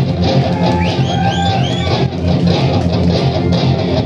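Live rock band playing an instrumental passage with no singing: strummed electric guitars over bass guitar, loud and steady.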